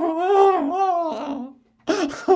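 A man's voice imitating exaggerated crying: a wavering, high-pitched mock wail that stops about a second and a half in, followed by a brief sound just before the end.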